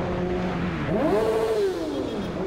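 Honda Hornet's inline-four engine under way: its note dips about a second in, then climbs as the throttle opens and eases back down near the end.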